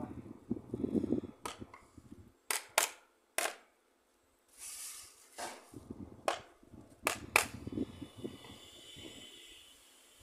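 A series of about eight sharp clicks and knocks, irregularly spaced, from hand work on a booster pump and its fittings, with a brief hiss about halfway through.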